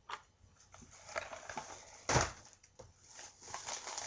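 Scattered handling noises as a candy box is moved about in the hands, with one louder dull thump a little after two seconds in.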